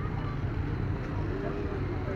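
Steady low hum of an inflatable bouncy castle's electric air blower running continuously, with faint children's voices in the distance.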